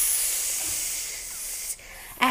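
A drawn-out 'sss' hissed by a voice, imitating a snake to sound out the letter S. It fades gradually and dies away near the end.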